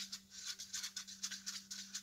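A cut-off measuring-tape stir stick scraping round a small paper cup, stirring Rubio Monocoat hardwax oil mixed with its accelerator, in quick repeated scratchy strokes.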